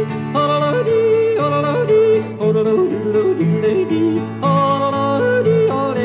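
Male singer yodeling a wordless refrain, his voice flipping repeatedly between a low chest note and a high falsetto note, over a steady country instrumental accompaniment.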